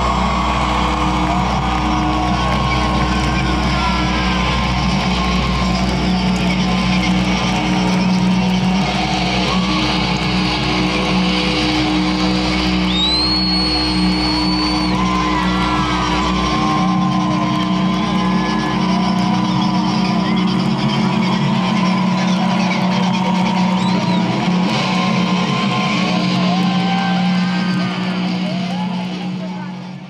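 Concert crowd cheering over a sustained droning chord ringing from the stage amplifiers after a rock song, with one high-pitched whistle about halfway through. The sound fades out near the end.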